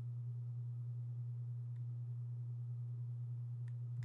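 A steady low hum, with a faint single mouse click near the end.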